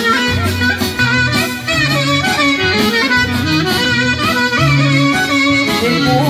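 Live Greek folk band playing an instrumental passage between sung verses through a PA: an ornamented, wavering lead melody over a steadily pulsing bass line.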